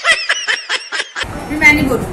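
Laughing sound effect: a quick, even run of about eight 'ha' laughs that cuts off about a second in, followed by room sound and a short laugh from someone in the room.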